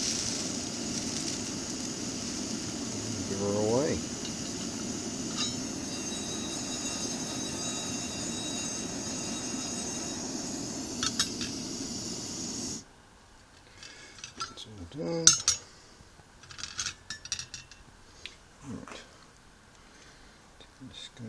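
Steady hiss of a burner heating a stainless steel frying pan to dry wet gold flakes, cutting off suddenly about thirteen seconds in. Then light metallic clicks and clinks, the loudest about fifteen seconds in, as the gold is handled and tipped toward a digital scale's weighing pan.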